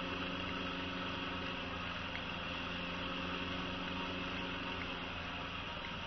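Homemade permanent-magnet motor-generator spinning unloaded at steady speed: a steady hum of several pitches with a thin high whine above it.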